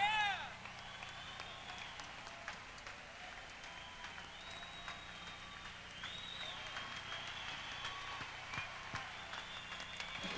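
Audience applauding and cheering, with a loud shout right at the start and high whistles through the applause.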